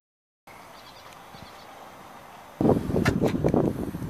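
A moment of dead silence at an edit, then a faint outdoor hiss. About two and a half seconds in, a much louder rough rustling with short knocks starts and runs on.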